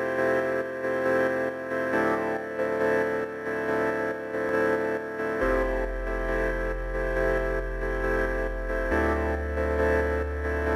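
Music: slow sustained chords that change about every three and a half seconds, with a deep bass note coming in about halfway through.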